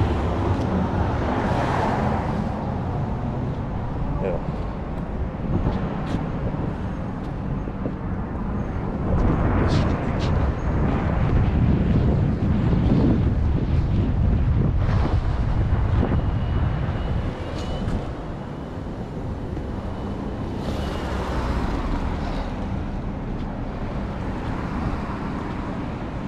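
Street traffic ambience: cars passing on the road, swelling louder for several seconds in the middle, with wind buffeting the microphone.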